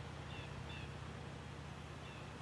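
Two faint, short bird chirps, about a third of a second and three-quarters of a second in, over a steady low hum.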